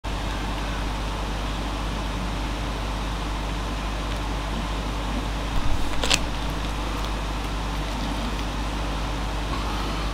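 A steady mechanical hum and hiss with a constant low rumble underneath. A few brief knocks come just before the middle, then one sharp click.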